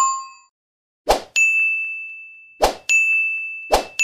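Stock subscribe-button sound effects: three bright notification-bell dings, each set off by a short swoosh just before it and each ringing on and fading away over a second or more. A lower chime fades out at the start.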